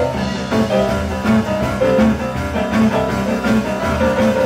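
A live band plays an instrumental rock and roll passage, led by a Roland RD-700 stage piano, over a steady beat.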